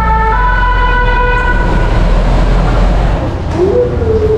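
Two-tone emergency vehicle siren sounding over street traffic: a lower note, then a higher note held for about two seconds before it fades. The traffic rumble drops away about three seconds in.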